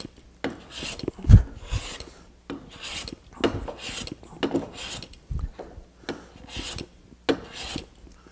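Hand plane skimming a wooden board: a series of hissing cutting strokes, roughly one a second, as the iron takes thin shavings. There is a low knock about a second in.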